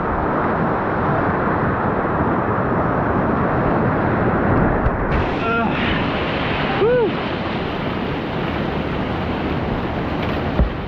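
Whitewater rushing and churning around a kayak running a rapid, heard up close as a steady rush of water, with splashing against the hull and paddle.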